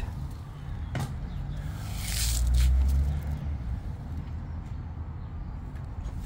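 Wet EPS polystyrene insulation beads handled on a hand, faint against the open air, with a single click about a second in and a low rumble that swells for about a second around two seconds in.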